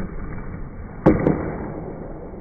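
Skateboard deck clacking against a concrete floor during a trick: one sharp clack about a second in, with a lighter click just after.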